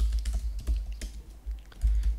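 Computer keyboard typing: a run of quick, irregular key clicks.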